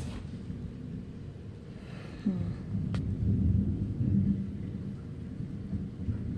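Thunder rolling after a nearby lightning strike: a low rumble that swells about two seconds in, is loudest in the middle, and rolls on.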